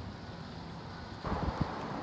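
Steady low rumble of wind on the microphone outdoors. About a second in it grows louder and brighter, with a couple of dull knocks.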